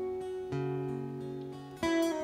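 Steel-string acoustic guitar picked in an instrumental passage, its notes ringing on, with a new bass note about half a second in and a fresh chord plucked near the end.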